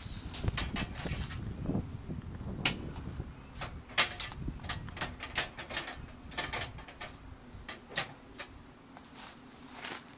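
Footsteps on gravel, then scattered sharp clicks and knocks from an outdoor electrical panel being opened and its main breaker switched off to cut the house's power. The sharpest click comes about four seconds in.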